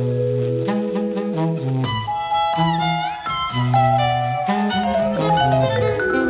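Instrumental chamber jazz: a bowed violin and a tenor saxophone play sustained, overlapping melodic lines over a low moving line, with a note that bends in pitch about two and a half seconds in.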